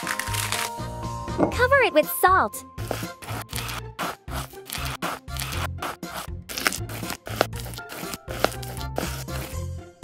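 Aluminium foil crinkling as it is folded around a fish, then coarse salt poured and heaped over the foil parcel in many short crackles, over background music with a steady beat. A short sliding voice-like sound effect comes about two seconds in.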